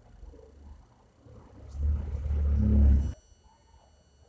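A hand brushing and rubbing against the camera's microphone makes a deep rumbling handling noise. It swells about two seconds in and cuts off suddenly just after three seconds.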